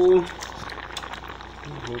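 A pot of rice boiling on a gas stove, a steady bubbling hiss, after a man's voice finishes a word right at the start.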